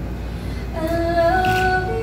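A woman singing: after a short pause, a sung line enters about two-thirds of a second in on a held note that steps up in pitch, over acoustic guitar accompaniment.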